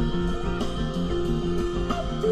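Rock band playing an instrumental passage: electric guitar holding long sustained notes over a repeating bass figure, with light regular cymbal taps.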